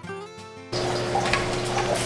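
Plucked acoustic guitar background music ends suddenly under a second in. It gives way to a steady hiss of trickling water with a low steady hum: an aeroponic tower garden's pump running and circulating water.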